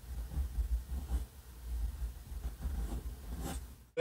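Noodler's Ahab fountain pen's untipped flex nib scratching faintly across paper in short, irregular strokes while writing script, over a steady low rumble.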